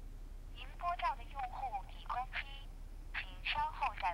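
Recorded telephone network announcement heard through a mobile phone's earpiece, a thin voice in several short phrases ending with "请稍后再拨" (please dial again later): the number being called cannot be reached.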